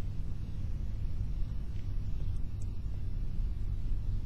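Steady low rumble with no speech, with a couple of faint ticks about halfway through.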